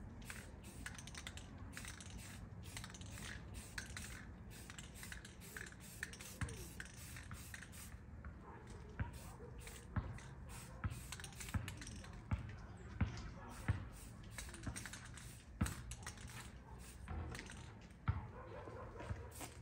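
Aerosol spray paint hissing from a rattle can in short bursts, mixed with clicks from handling the can and rifle. About halfway through the spraying stops and a series of sharper separate knocks follows.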